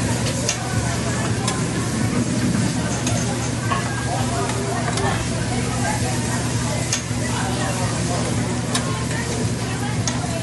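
Fried rice sizzling on a hot steel hibachi griddle as a metal spatula stirs and scrapes it, with a few sharp clicks of the spatula against the plate. A steady low hum runs underneath.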